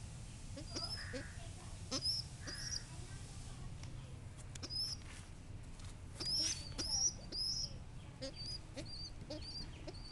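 Short, high squeaky bird chirps repeating roughly once a second, often in quick pairs, with scattered light clicks between them.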